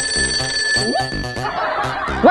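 Mobile phone ringing for an incoming call: a bright bell-like ring that starts suddenly and dies away over about a second and a half, over background music with a steady beat.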